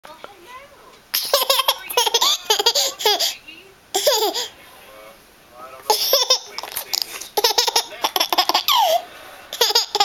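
A toddler laughing hard in several bouts of rapid, pulsing giggles with short pauses between, the first starting about a second in.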